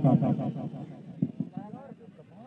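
Speech: a man's voice trailing off, then fainter voices in the background, with one short click about a second in.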